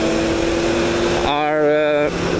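Steady motorcycle riding noise, engine and wind rush, heard from on the moving bike. Over it a single held tone runs through the first part, and a voice comes in over the last half-second.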